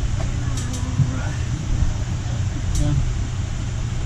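A steady low hum in the workshop, with a few light clicks as small chainsaw oiler parts are handled, twice close together under a second in and once more near three seconds.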